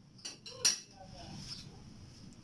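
A spatula knocking against a wok while the chicken curry is stirred: two sharp clinks under half a second apart, the second louder, followed by faint scraping.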